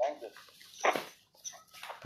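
A few short, quiet vocal sounds with gaps between them: one falling in pitch at the start, a stronger one about a second in, and small fragments near the end.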